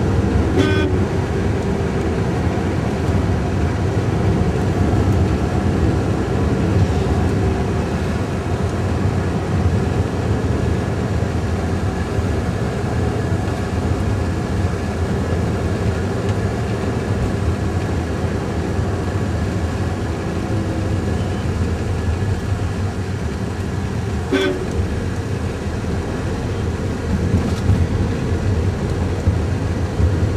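Steady engine and road noise heard from inside a moving car's cabin. A short horn toot sounds about half a second in and another about 24 seconds in.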